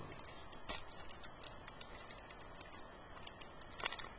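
Glossy trading cards being handled and flipped through by hand: a run of light clicks and ticks as the cards slide and snap against each other, with sharper snaps about two-thirds of a second in and just before the end.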